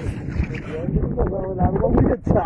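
People's voices talking over a steady low rumble of wind on the microphone and the boat.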